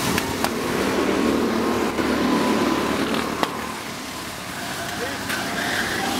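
Go-kart engines running steadily as karts drive past on the track, with people's voices over them. Two sharp clicks, about half a second in and past the three-second mark.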